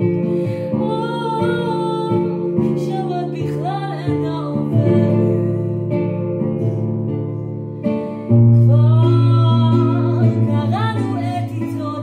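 A woman singing a slow song, accompanying herself on a digital piano keyboard with held chords. A louder low chord is struck about eight seconds in.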